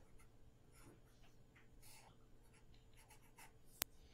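Faint strokes of a Sharpie permanent marker drawing on paper: a free-body diagram being sketched in short, separate strokes, with one sharp click near the end.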